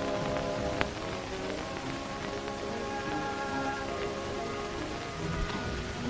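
Background film-score music of held notes that shift in pitch, heard under the constant hiss and crackle of a worn 1930s optical film soundtrack, with one sharp click about a second in.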